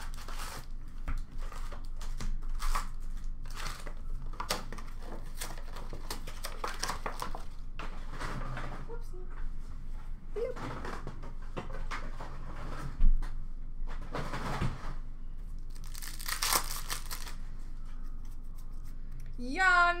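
Hockey card pack wrappers being torn open and crinkled, with cards handled in between: a run of short rustles and rips, a sharp knock partway through, and a longer, louder rip near the end.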